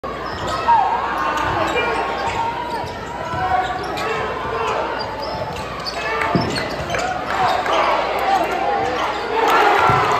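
Basketball dribbled on a hardwood court, its bounces echoing in a large gym, under the steady chatter and shouts of an arena crowd. The crowd noise swells near the end.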